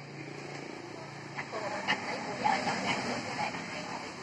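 Indistinct talking over a low steady hum, the voices coming in after about a second and a half.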